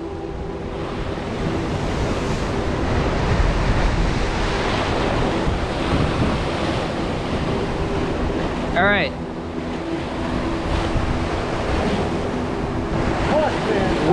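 Sea surf breaking and churning against rocks below, a steady rushing wash, with wind buffeting the microphone. A short shouted call comes about nine seconds in.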